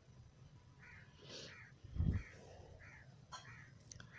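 A crow cawing in a run of short, repeated calls, fairly faint, with one dull low thump about halfway through.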